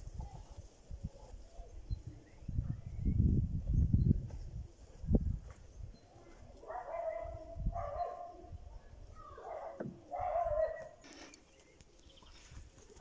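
Low muffled rumbles and a sharp click in the first half, then four short pitched calls from an animal in the second half.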